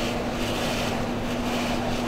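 Steady road and engine noise heard inside a moving car's cabin, with a steady low hum running under it.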